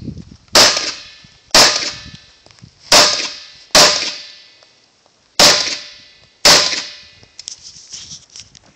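Six handgun shots fired in a practical shooting stage, each a sharp crack with a fading tail, spaced unevenly about a second apart with a longer gap after the fourth.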